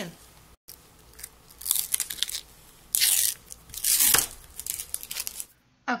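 Protective plastic film being peeled off a metal nail-stamping plate, in three noisy pulls: one about a second and a half in, and two close together around three and four seconds.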